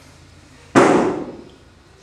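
A single loud, sharp bang about three-quarters of a second in, dying away over about half a second.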